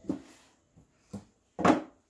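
Handling noise of hard objects: a light click about a second in, then a louder knock near the end, as items are picked up and set down.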